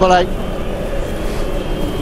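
Steady football stadium crowd noise from the match footage; a voice breaks off about a quarter second in.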